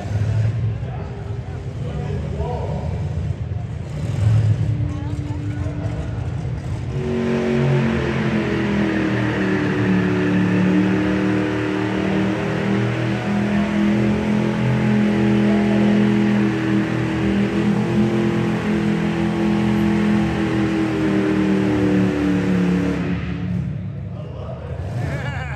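Hot rod's engine running; from about seven seconds in it holds a steady note, wavering only slightly in pitch.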